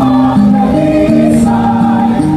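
A mixed choir of men and women singing in harmony, holding notes that move to new pitches a few times.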